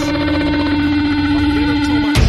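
A loud, steady droning tone held at one pitch, with fainter overtones above it and a low rumble underneath: a sustained drone in the edit's soundtrack.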